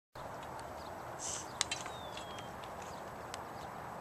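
Quiet outdoor ambience with one sharp click about one and a half seconds in, followed by a couple of fainter ticks and a faint, short falling whistle.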